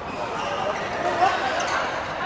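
Players' voices chattering in a large echoing badminton hall, with a few sharp knocks, the loudest about a second in.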